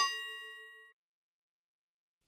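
A single bell-like ding sound effect that rings and fades out within about a second, cueing a question on screen.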